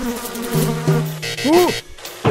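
A buzzing, pitched sound, steady at first, then a quick tone that rises and falls about a second and a half in.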